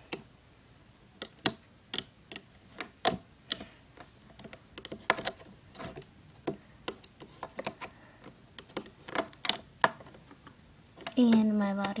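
Irregular light clicks and taps from a plastic Rainbow Loom and its hook as rubber bands are worked off the pegs, a few each second with quiet gaps between them.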